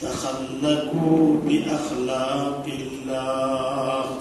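A man chanting in Arabic with long, held melodic notes, in three phrases with short breaks between them.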